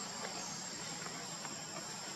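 Steady, continuous high-pitched chorus of insects, such as crickets or cicadas, in forest undergrowth, with a thin steady whine on top.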